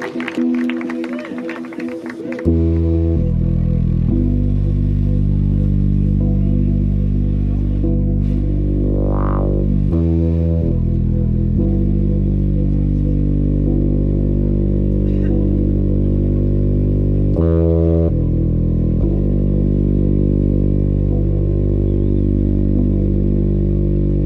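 Live-looped electronic music on a Roland Juno-106 synthesizer: held chord pads, then about two and a half seconds in a loud, deep bass drone enters and holds. The bass moves to a new note roughly every seven seconds, with a rising filter sweep near the middle.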